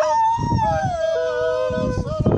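A dog howling: one long howl that starts high and slides down in pitch in steps. It is the dog's response to the call to prayer.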